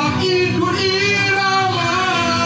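A man singing into a handheld microphone over backing music, his voice holding and bending long notes.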